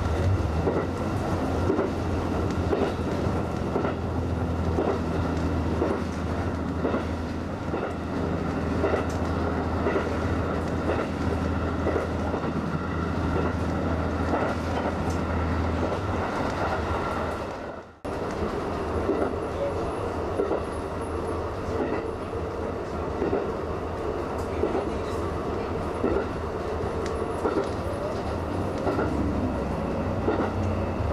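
Resort Asunaro HB-E300 series hybrid railcar running along the track, heard from inside: a steady low running hum with wheels clicking over the rail joints. The sound drops out for a moment a little past halfway, then carries on.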